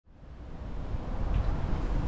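Low, rumbling outdoor background noise of the street, with wind on the microphone and traffic, fading in over the first second.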